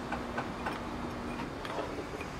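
A few light, irregular clicks and taps of metal tongs handling small graphite ingot molds on firebricks.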